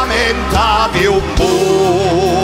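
Live band music with a voice holding notes with a wide, wavering vibrato, the pitch shifting from note to note over a steady bass.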